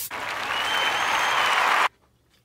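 Beaten eggs sizzling as they are poured into a hot frying pan: a loud, steady hiss that cuts off suddenly near the end.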